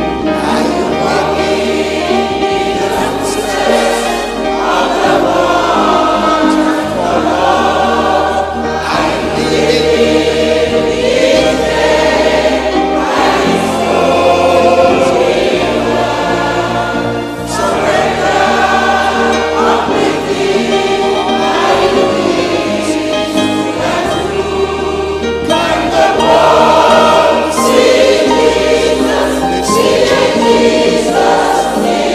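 Large mixed choir of men and women singing a gospel hymn in English in phrases of a few seconds each, over keyboard accompaniment with held bass notes.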